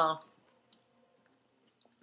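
Near silence with a couple of faint clicks, after a woman's voice trails off at the very start.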